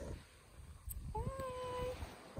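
A woman humming one held "mmm" note with closed lips, starting about a second in and lasting under a second, after a light click.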